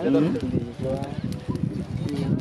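People talking, with sharp crackles from a fire of dry twigs and grass burning.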